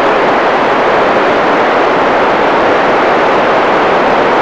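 Loud, steady hiss of static from an FM radio receiver with no signal coming in: the gap between the International Space Station's voice transmissions.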